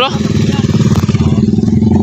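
Small motorcycle engine running at low speed, a steady, evenly pulsing low engine note.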